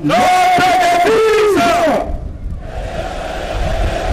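Massed soldiers' voices chanting in unison: two long, drawn-out shouted phrases, then the noise of the crowd over a low rumble.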